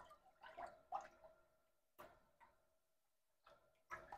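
Near silence, with a few faint, short water sloshes as a hand wipes around the inside of a toilet bowl.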